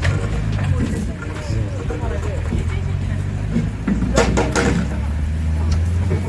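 Engine of a pickup truck loaded with bamboo poles, pulling away along a dirt road with a steady low hum, with voices of people nearby briefly around four seconds in.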